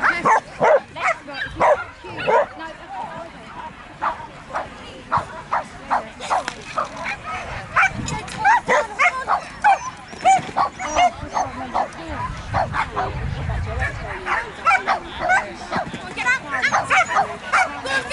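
A dog barking in short, repeated barks as it runs an agility course.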